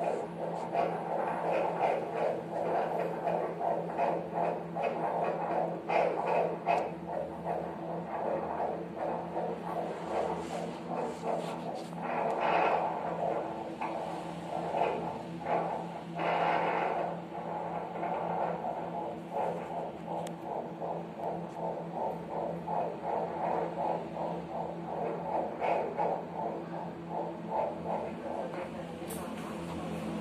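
Fetal Doppler monitor's loudspeaker playing an unborn baby's heartbeat: a fast, steady, even whooshing pulse over a steady electrical hum, with two brief louder bursts about 12 and 16 seconds in. The heartbeat is judged normal.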